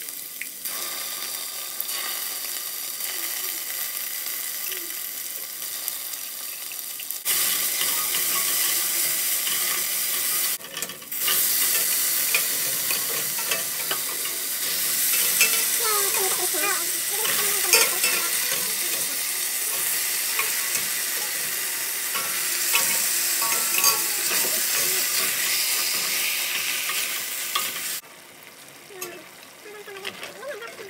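Onion and garlic sizzling in hot oil in a stainless steel pot, then chunks of meat frying in the pot as a metal ladle stirs and scrapes them. The sizzling gets louder about seven seconds in and again after a short dip, and falls away sharply near the end.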